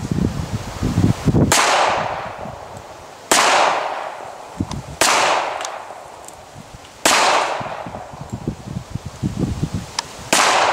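Four single shots from a 1911 .45-calibre pistol, about one and a half to two seconds apart, each sharp crack trailing off over a second or more.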